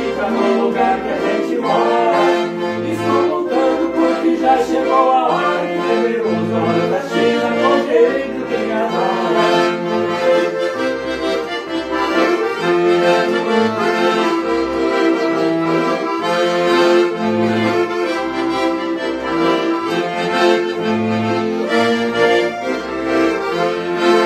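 Two piano accordions playing an instrumental passage of a gaúcho song together, the melody over a steady bass line whose low notes alternate about once a second.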